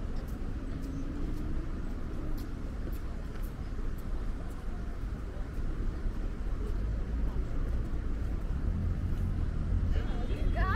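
Street ambience: a steady low rumble of road traffic from the multi-lane road alongside, with a few faint ticks over it.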